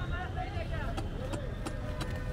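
Busy market din: background voices over a steady low rumble, with a few sharp knocks in the second half as fish is chopped on the cutting blades.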